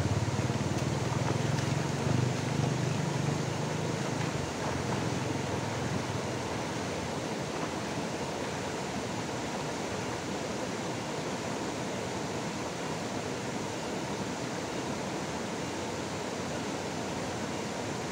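Shallow river rushing steadily over a stony ford.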